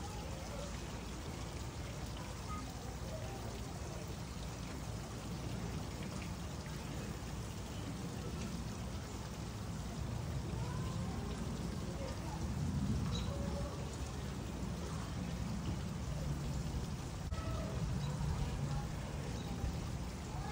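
Steady patter of rain, with faint distant voices.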